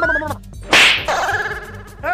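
A loud, sharp slap sound effect about three-quarters of a second in, with a short pitched gliding effect dying away just before it and a held, fading tone after it.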